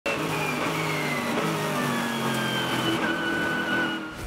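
Onboard sound of a Mercedes-AMG GT3 race car's V8 engine running on track, its note slowly falling in pitch, mixed with background music.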